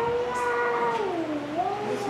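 A long, high-pitched drawn-out vocal sound, held level for over a second, then dipping in pitch and rising again near the end.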